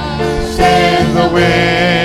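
Gospel worship song: singing with long, wavering held notes over a steady band accompaniment.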